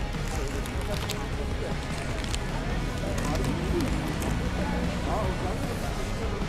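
Busy street ambience: a steady low rumble with indistinct voices of people nearby.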